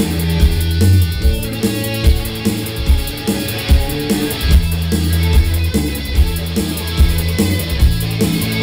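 Live rock band playing: electric guitar, bass and a drum kit keeping a steady beat, with loud bass notes underneath.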